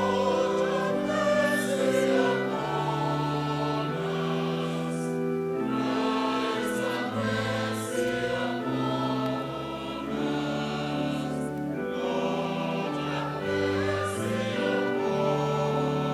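Church choir singing with organ accompaniment. The organ holds steady chords beneath the voices and changes chord every second or so.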